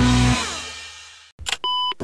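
The intro theme music ends on a final chord that fades away over about a second. After a brief silence there is a short click, then a single short electronic beep near the end, a steady tone lasting about a third of a second: a sound effect of the title sequence.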